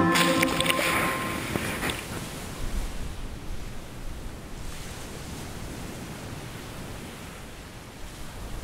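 Ocean surf washing up the beach: a loud foamy rush of water in the first two seconds, then a steady, fainter hiss of waves that slowly fades.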